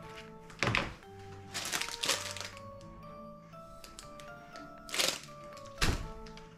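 Background music running throughout, with a handful of knocks and thuds as a hot glue gun and a craft tube are handled and set down on a table: one about a second in, a cluster around two seconds, and two more near the end.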